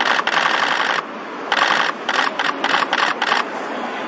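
Camera shutters firing in rapid bursts of continuous shooting: one burst lasting about a second, then a string of shorter bursts.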